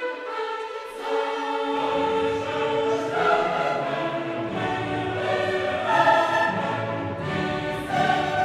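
Background choral music: a choir singing sustained, held notes, with a fuller lower range coming in about two seconds in.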